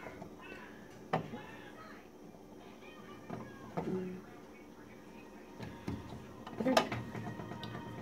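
Small white plastic parts being fitted onto a Brieftons pull-chopper lid by hand: faint handling sounds with a few light plastic clicks, the sharpest near the end.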